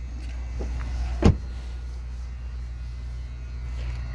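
Rear side door of a 2014 Lexus GX 460 shut once, a single loud thud a little over a second in, over a steady low hum.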